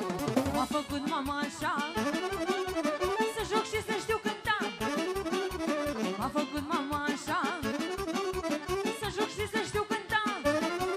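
Live band music at a fast dance tempo: an accordion leads with quick, ornamented runs over a steady drum beat.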